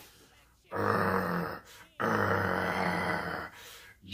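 A man imitating a lion's roar with his own voice: two long, rough growling roars, the second one longer.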